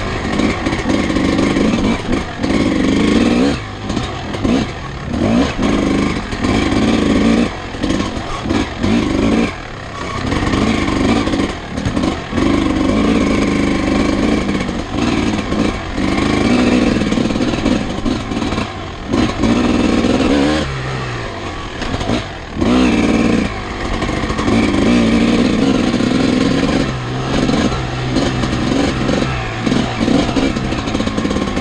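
Vintage dirt bike's engine revving hard under race load, the throttle chopped and reopened every few seconds so that the note dips briefly and surges back.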